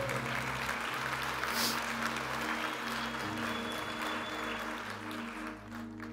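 Congregation applauding, the clapping fading away near the end, over soft background music of sustained chords that change once about halfway through.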